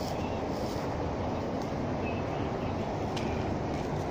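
Steady low rumbling noise, with a few faint short high chirps.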